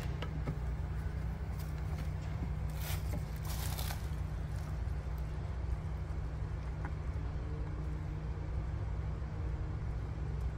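Plastic beehive frames being handled and pushed together in a wooden hive box, with a few scrapes and knocks about three to four seconds in, over a steady low hum.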